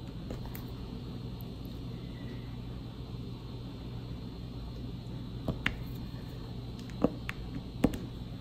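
Steady low hum in the room, with a few sharp clicks near the end from the diamond-painting pen and resin drills being tapped onto the canvas.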